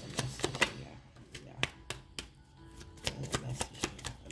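A deck of tarot cards being shuffled by hand: an irregular run of sharp card flicks and slaps.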